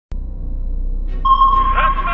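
Sonar-style electronic intro sound effect: a low hum, then about a second in a steady high tone sets in with short electronic chirps gliding over it.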